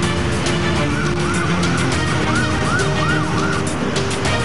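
Intro music of a TV traffic-update bumper, with a siren going up and down in quick repeated sweeps over it from about a second in until near the end.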